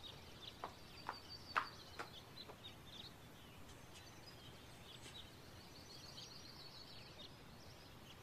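Faint garden ambience with birds chirping softly, and a few light taps in the first two seconds.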